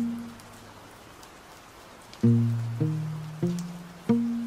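Slow, sparse acoustic guitar music: single low plucked notes that ring and fade, one at the start, then a pause, then three more about half a second apart from a little past two seconds in, over a faint steady hiss.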